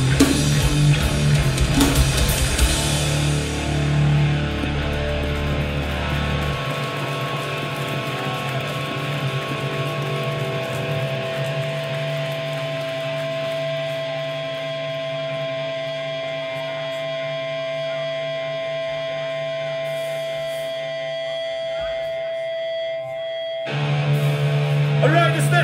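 A hardcore band playing live: heavy distorted guitars and pounding drums for the first few seconds. The drums and bass then drop away, leaving the guitars ringing in a steady, sustained drone, and the full band crashes back in right at the end.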